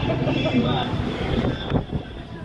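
Street sounds: a steady low vehicle rumble with people's voices talking, and a sharp click shortly before the end.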